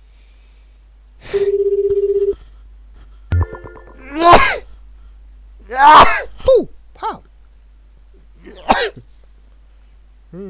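Internet phone call: a buzzing call tone for about a second, a click as the line connects, then a voice over the line in five short, loud bursts.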